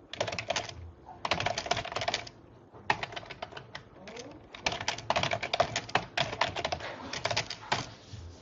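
Typing on a computer keyboard in several quick bursts of rapid key clicks, with short pauses between them.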